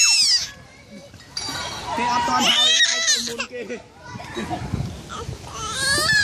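Children's high-pitched voices calling out and chattering, in two bursts, with laughter near the end.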